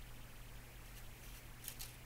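Quiet room tone with a steady low hum, and two faint small clicks near the end from hands handling small objects.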